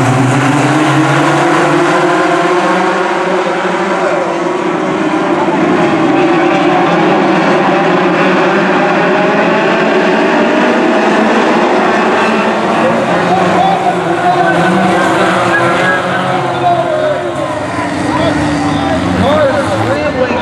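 A pack of Ford Focus midget race cars running on a dirt oval: several four-cylinder engines revving together, their pitch rising and falling as they go through the turns.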